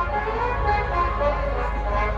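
Loud procession music blaring from a large loudspeaker rig: a constant heavy bass under a wavering, horn-like melody line.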